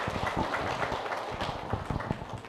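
A seated crowd applauding, a dense patter of hand claps that thins out toward the end.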